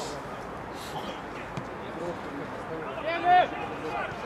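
Men's voices calling out across an outdoor football pitch, with one loud, high-pitched shout about three seconds in.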